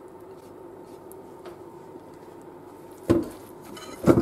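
Quiet stirring of grated carrots into cake batter with a silicone spatula in a plastic mixing bowl, then a single sharp knock about three seconds in.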